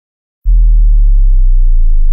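A loud, deep synthesized tone, the sound effect of an animated logo sting. It starts about half a second in and holds, slowly sinking in pitch.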